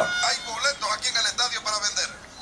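Speech with a thin, tinny sound, as from a television's small speaker: broadcast commentary.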